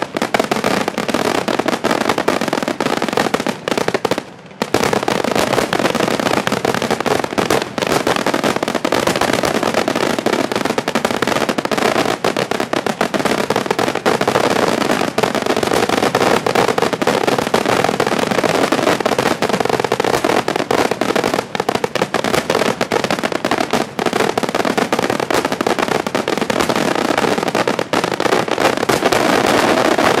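Aerial fireworks display by Fratelli Ponte: a dense, continuous barrage of shell bursts and crackling, with one brief lull about four seconds in.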